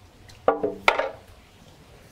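Two sharp clanks about half a second apart: a dish or container set down in the kitchen sink, the first clank ringing briefly.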